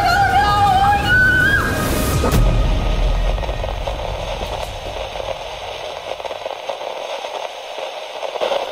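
A high, wavering scream that stops about a second and a half in, then a deep boom about a second later, followed by a steady hiss that slowly fades.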